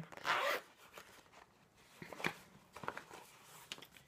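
The zipper of a small fabric makeup pouch pulled open in one short zip at the start, followed by a few faint clicks and rustles of the items inside being handled.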